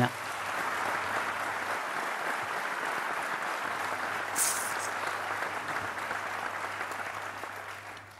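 A large audience applauding steadily, the clapping dying away near the end.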